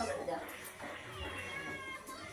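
Voices, then a high-pitched, drawn-out meow-like cry starting about halfway through, slightly falling in pitch.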